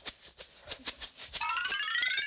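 Rice rattling inside a plastic shampoo bottle shaken like a maraca, in a quick even rhythm of about six shakes a second. About two-thirds of the way in, a rising whistling tone glides upward over it.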